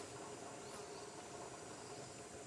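Steady high-pitched chirring of insects, with a low steady hum underneath and one faint click about three quarters of a second in.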